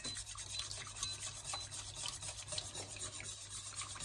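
Wire balloon whisk scraping round the bottom and sides of an enamelled pot while whisking cream: a rapid, continuous run of soft scratchy strokes.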